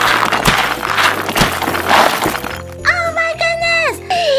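Plastic toy diamonds and small plastic figures pouring out of a broken piñata and clattering onto the floor, a dense rain of clicks that thins out about two and a half seconds in.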